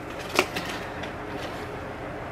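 Hands handling a cardboard subscription box and lifting out small succulents in fibre pots, with one light knock about half a second in over a low room hum.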